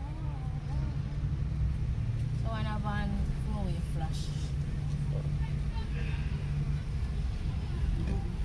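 Steady low rumble of a car heard from inside the cabin as it creeps through traffic, with short bits of voices twice, near the start and a few seconds in.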